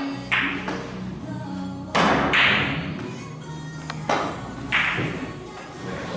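A carom billiards shot: sharp clicks as the cue tip strikes the cue ball and the balls knock against each other and the cushions, the strongest about two seconds in and around four seconds in. Background music plays throughout.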